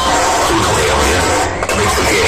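Loud DJ music played through large outdoor speaker stacks, heavy in the bass, with crowd noise mixed in; the level dips briefly about one and a half seconds in.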